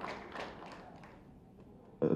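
A pause in amplified speech in a reverberant hall: the echo of the last word fades, with a few faint taps in the first second, then low room noise.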